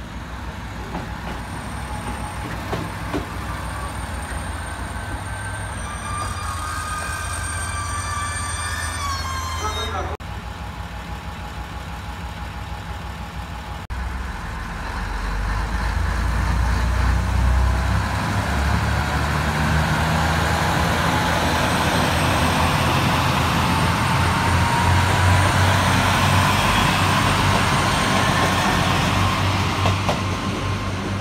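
JR Kyushu KiHa 220 diesel railcar's engine running as it moves off. Its low rumble grows much louder about halfway through, and a faint whine rises in pitch as it gathers speed.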